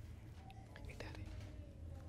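Faint, indistinct voices over a steady low hum, with a light click about a second in.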